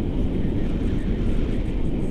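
Wind rushing over the action camera's microphone during paraglider flight: a loud, steady, low rumble of wind noise.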